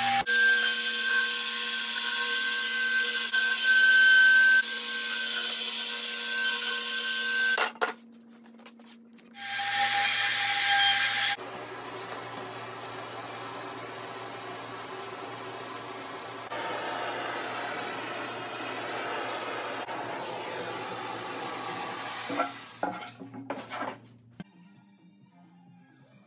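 Compact trim router with an eighth-inch bit cutting soft pine, a steady high whine for about eight seconds that stops abruptly. After a short gap comes a louder rush of about two seconds, then a steady quieter hiss from a propane torch.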